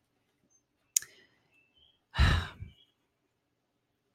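A woman's sigh: one breathy exhale lasting about half a second, a little over two seconds in. About a second in there is a brief sharp click.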